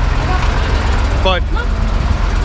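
Street traffic with a large vehicle's engine running close by, a steady low drone under the noise of the road. A man says one short word near the end.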